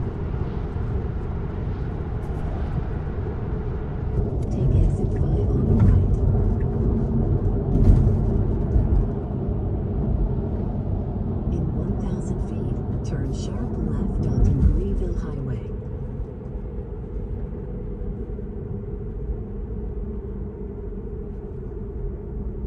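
Tyre and road noise inside the cabin of a Tesla electric car at highway speed: a steady low rumble that grows quieter about two-thirds of the way through as the car slows onto an exit ramp.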